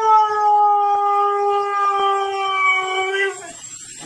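Siberian husky howling one long, steady note that sinks slightly in pitch and stops a little over three seconds in.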